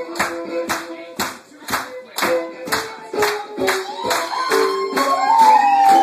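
Live fiddle tune played with sustained notes, with sharp beats keeping time about twice a second, like hand-clapping along. Near the end the fiddle plays long sliding notes.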